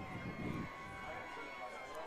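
Faint stadium background noise from a crowded football stadium, with a faint steady high-pitched tone underneath.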